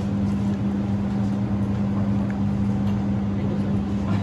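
A steady low machine hum with a constant droning tone, unchanging throughout.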